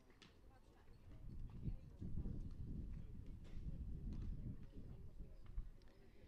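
Wind buffeting an outdoor microphone: an irregular low rumble that swells from about a second in and eases near the end, with a few faint clicks above it.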